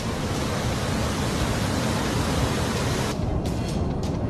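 Floodwater of a river in spate rushing past in a steady, loud wash of noise. About three seconds in the hiss thins out and a deeper rumble of water carries on.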